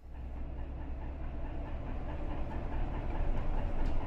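Inside a city bus on the move: steady engine rumble and road noise, growing gradually louder.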